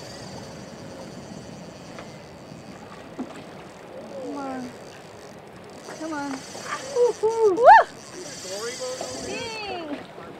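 Short wordless vocal exclamations from people in a boat while a hooked steelhead is played, several in the second half, the loudest a rising whoop near the end, over a steady high hiss.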